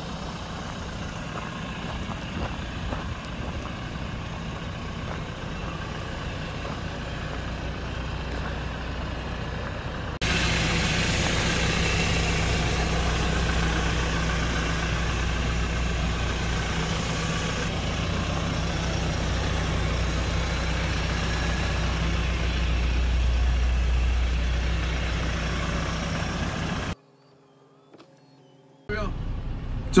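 2009 Hyundai Porter II pickup's diesel engine idling steadily. About ten seconds in it becomes louder and fuller, heard from inside the cab. Near the end it breaks off for about two seconds.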